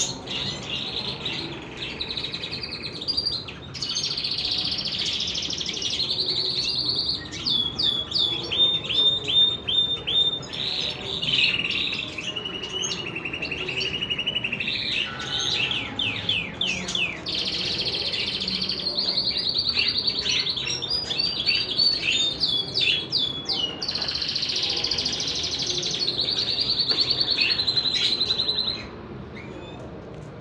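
A small songbird sings loudly and almost without a break. Its long phrases are made of fast trills and quick runs of repeated chirps, with a few short pauses, and the song breaks off suddenly shortly before the end.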